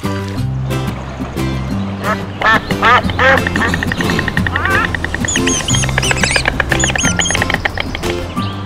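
Recorded duck quacks, a tap-triggered sound effect from an interactive storybook app, several in quick succession a couple of seconds in, over steady background music. High short chirps follow later on.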